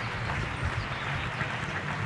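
Outdoor street background noise: a steady low hum under an even hiss, with no distinct event.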